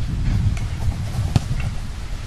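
Low, fluctuating rumble of wind on the microphone, with a couple of faint knocks, the clearer one about a second and a half in.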